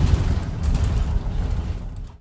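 Interior noise of a moving London bus: a steady low rumble from the drivetrain and road, with a few faint clicks and rattles.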